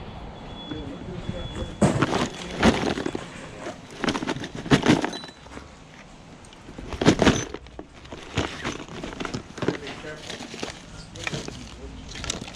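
Small plastic odds and ends (pens, tubes, trinkets) rattling and clattering in a clear plastic storage tote as it is handled and rummaged through with a gloved hand, in several separate bursts.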